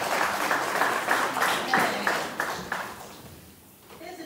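A small congregation applauding in a church hall, the claps falling into a loose rhythm of about three a second and dying away about three seconds in.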